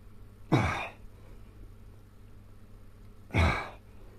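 A man's heavy, breathy exhalation with a falling groan, twice, about three seconds apart: strained breaths as he does push-ups.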